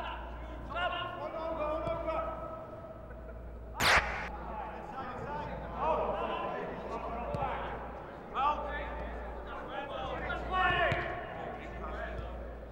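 Players' voices calling and chattering on an indoor pitch in a large echoing hall, with one loud thud of a football being kicked about four seconds in and a few lighter touches of the ball later.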